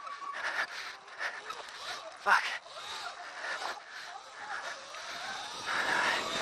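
Riding noise from a Sur-Ron Light Bee electric dirt bike on a dirt trail: an uneven hiss and rattle of wind, tyres on dirt and chain, with no engine running note, and a short louder jolt about two seconds in.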